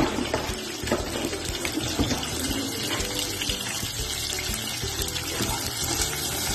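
Sliced onions frying in a nonstick pot: a steady sizzling hiss, with a few light knocks in the first two seconds.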